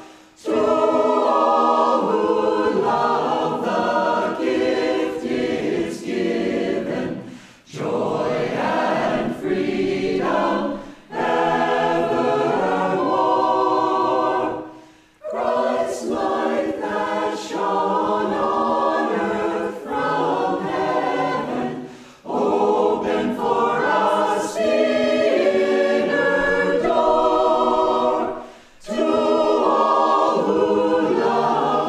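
Mixed choir of men's and women's voices singing together in harmony, in phrases several seconds long separated by short breaks.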